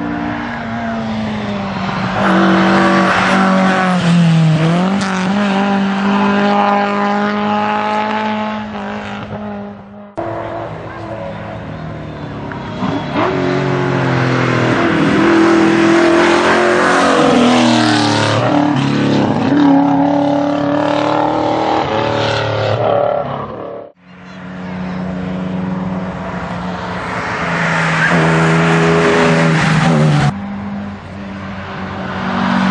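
Classic rally cars racing past one after another on a closed tarmac road stage, each engine revving hard, its pitch rising and falling through gear changes as it approaches and passes. The sound cuts off abruptly twice, about ten seconds in and about six seconds before the end, as one car gives way to the next.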